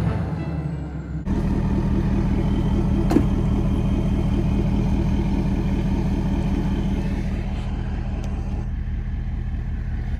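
Ford 6.7 Power Stroke V8 turbo-diesel idling with a steady low, lumpy beat, starting abruptly about a second in as background music ends, and slowly fading toward the end. A single sharp tap about three seconds in.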